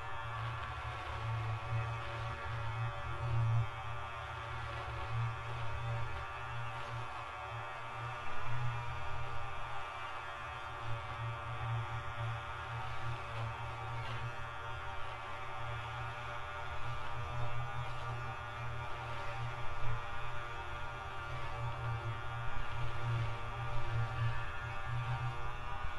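Electronic ambient music: a low buzzing drone under many layered, sustained higher tones, swelling and dipping unevenly in loudness.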